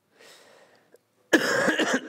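A faint, noisy sound, then about two-thirds of the way in a man coughs loudly into his hand.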